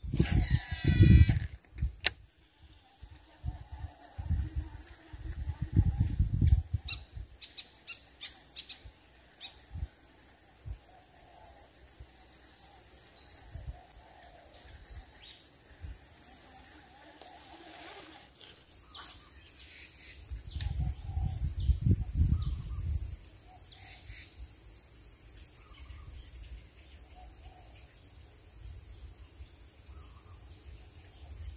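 Insects trill steadily at a high pitch over outdoor ambience. Loud low rumbles come right at the start, again a few seconds in, and once more past the two-thirds mark, along with a few scattered clicks.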